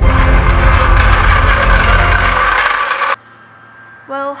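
A floor jack being rolled across a garage floor, its wheels and handle clattering loudly, cutting off suddenly about three seconds in.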